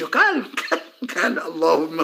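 A man's voice making short wordless vocal sounds, two brief utterances with a pause about a second in.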